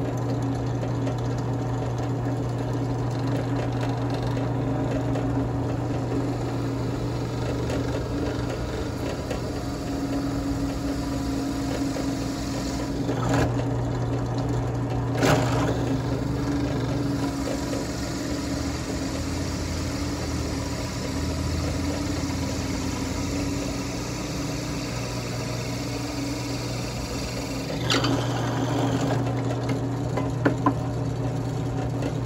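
Benchtop drill press motor running steadily while the bit drills a quill-pen hole into a turned cedar block. The sound gets briefly louder and rougher three times, about halfway through and near the end, as the bit cuts.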